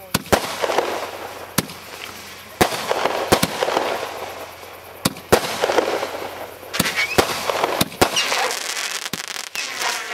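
A consumer fireworks cake firing shot after shot: about a dozen sharp reports as shells launch and break, with crackling after several of them.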